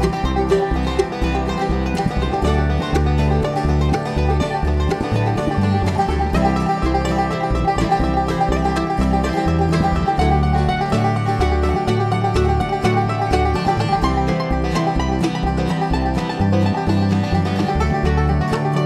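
Bluegrass string band playing an instrumental passage live: rapid banjo picking over mandolin and acoustic guitar, with upright bass notes underneath, keeping a steady driving tempo throughout.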